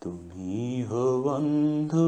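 Man singing a Hindi devotional bhajan, drawing out long wavering notes with vibrato.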